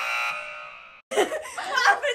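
A high-pitched excited squeal from a young woman, held on one pitch and fading over about a second before breaking off, then laughter.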